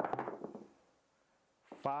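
A pair of dice thrown onto a craps table, clattering on the felt and against the rubber-pyramid end wall for about half a second.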